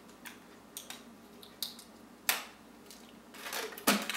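A rubber balloon stretched over a cell phone, handled in the fingers as air bubbles are worked out of it: scattered short rubbing and clicking noises, with louder sharp ones a little past two seconds in and just before the end.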